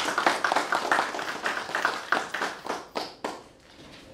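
Small audience clapping, a quick irregular patter of hand claps that stops about three seconds in.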